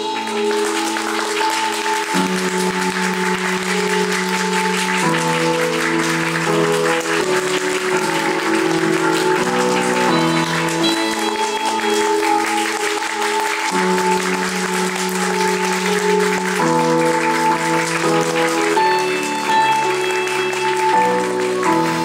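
Theatre audience applauding steadily over instrumental curtain-call music made of sustained chords that change every second or two.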